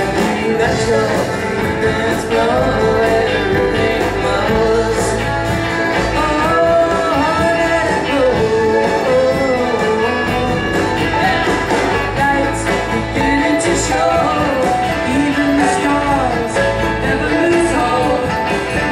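Live rock band playing: violin and cello lines over a strummed electric guitar, bass and drums, with no break.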